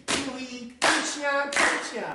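Sharp hand claps at a steady beat, about one every 0.7 seconds, each ringing briefly, with a short bit of voice between them.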